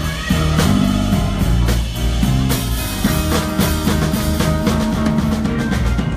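Live blues-rock band playing amplified: electric guitar, keyboard and drum kit, with steady drum hits under held notes.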